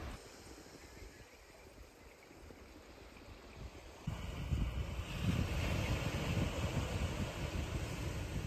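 Wind buffeting the microphone outdoors: an irregular low rumble of gusts with a faint hiss above it. Subdued for the first half, it steps up abruptly and becomes louder about four seconds in.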